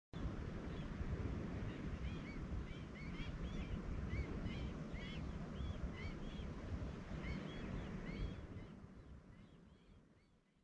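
Birds calling, many short rising-and-falling chirps, over a low rumble of wind on the microphone. Everything fades out near the end.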